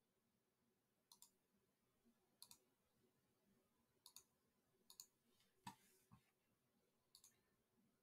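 Faint clicks of a computer mouse, about a dozen scattered through a near-silent stretch, several coming in quick pairs.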